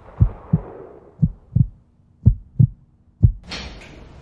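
Heartbeat sound effect: low 'lub-dub' thumps in pairs, about one pair a second, with a faint low hum partway through.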